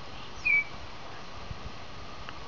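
A bird's single short chirp about half a second in, with a quick falling note just before it.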